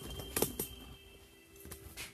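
Handling noise from a phone being turned around on its tripod: a sharp knock about half a second in and a few lighter taps near the end, over a faint steady tone.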